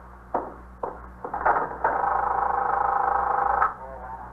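Telephone bell ringing in one continuous ring of about two seconds, after a couple of light clicks, as a sound effect in an old radio-drama recording.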